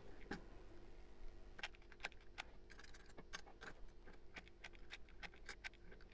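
Faint, irregular small clicks and taps of pebbles knocking in a small bucket as a hot glue gun's nozzle works over them, drizzling hot glue to fix the pebbles in place.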